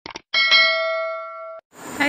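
Subscribe-button animation sound effect: two quick mouse clicks, then a bright bell ding that rings for about a second and cuts off. Faint outdoor background noise fades in near the end.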